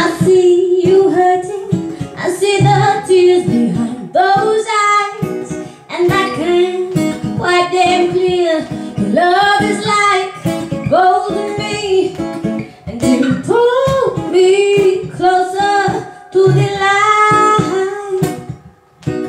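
A woman singing a melody in phrases, accompanied by a plucked acoustic guitar.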